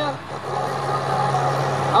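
International farm tractor's diesel engine running steadily under heavy load as it drags a tractor-pull sled slowly along the track.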